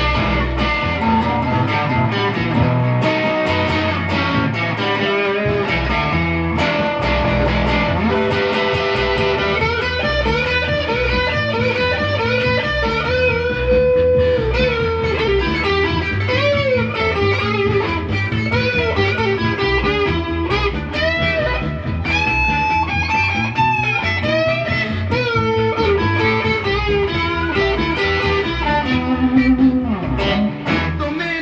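Blues-rock electric guitar solo with bent notes, played over a backing of bass and drums.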